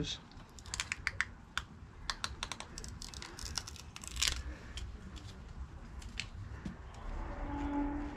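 Clear application tape being peeled slowly off vinyl decal lettering on a motorcycle wheel rim, giving a string of small, irregular crackles and clicks.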